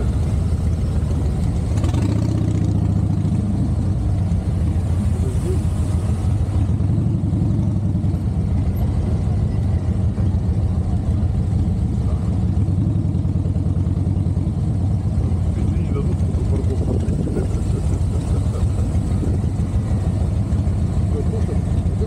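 Harley-Davidson motorcycle's V-twin engine running at low speed through city traffic, a steady low engine note heard from the bike itself.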